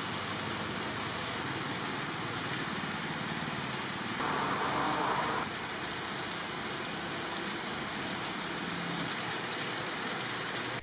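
Steady rushing background noise with a faint steady hum; it swells a little for about a second, about four seconds in.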